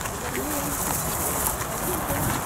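A dove cooing: a few low, soft coos in the first second, over a steady high-pitched hiss.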